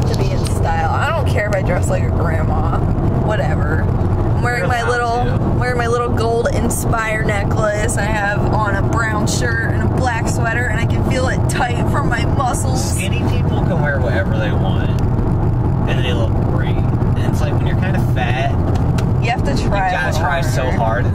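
Steady road and engine rumble inside a moving car's cabin, with voices talking over it.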